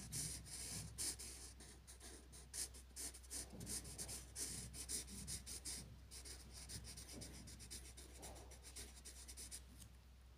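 Thick felt-tip marker scratching back and forth on paper in rapid strokes as a shape is coloured in. The strokes are dense for about the first six seconds, then turn fainter and sparser.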